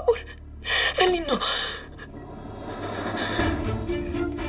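A woman crying: a loud sobbing gasp with a falling pitch about a second in, trailing off into shaky breath. Music comes in near the end.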